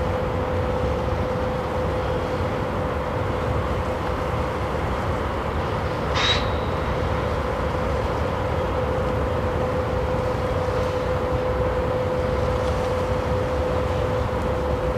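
Steady background rumble with a constant hum, and one brief, sharp call-like sound about six seconds in.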